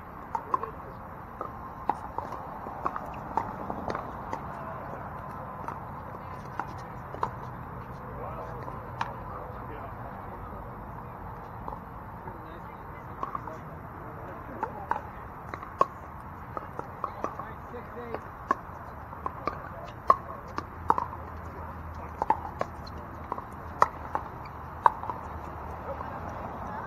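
Pickleball paddles hitting the hard plastic ball: sharp pops coming in irregular runs, some loud and close, others fainter from nearby courts. There are more of them near the beginning and through the second half.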